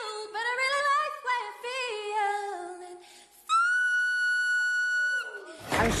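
Unaccompanied singing, the voice sliding downward, then after a brief gap a single very high, whistle-like note held steady for about two seconds.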